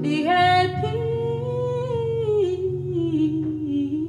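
A woman singing one long held note that glides up at the start and falls away about two seconds in, over a softly played acoustic guitar.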